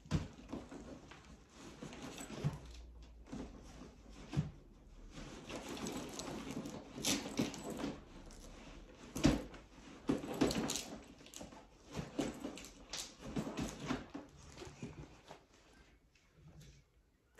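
Irregular rustling, scraping and soft knocks of a handbag and its contents being handled as a felt bag organiser is pulled out of a large canvas tote, with a sharper knock about nine seconds in.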